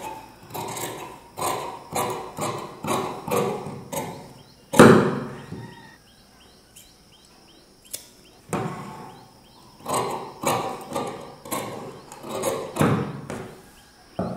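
Large tailoring scissors cutting through fabric: a run of short snips about every half second, with a louder knock about five seconds in, a quieter pause, then more snips.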